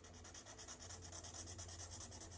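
Felt-tip marker scratching on paper in quick, repeated back-and-forth strokes as a shape is coloured in, faint.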